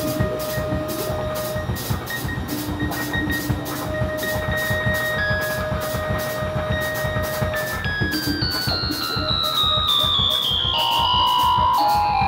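Live experimental band music with saxophone, electric guitar, keyboard and drums: a fast, even rhythmic pulse under long held tones. About two-thirds of the way in, a high tone begins stepping steadily downward in pitch.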